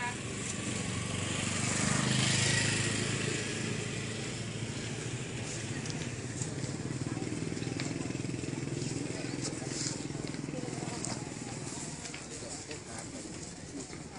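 A motorcycle engine running close by, swelling loudest about two seconds in and then running on steadily under general street noise.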